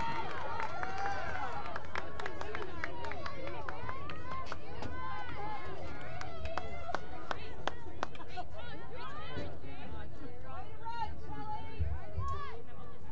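Many voices calling and shouting across a lacrosse field, short overlapping shouts with scattered sharp clicks.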